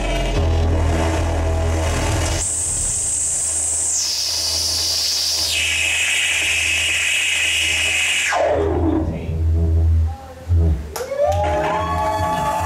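Electronic synthesizer passage over a deep, steady bass drone. A high tone enters, steps down in pitch twice, then sweeps steeply downward about eight seconds in. After a short drop near ten seconds, new rising synth tones come in.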